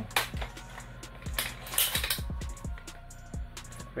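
Irregular clicks and knocks of an AR-15 rifle being handled and shifted in the hands, over quiet background music.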